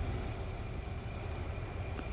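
Steady low rumble of a vehicle's engine and cabin noise, heard from inside the cab.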